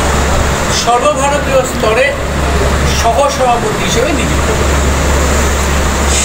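A man speaking in short phrases with pauses, over a steady low hum and background noise.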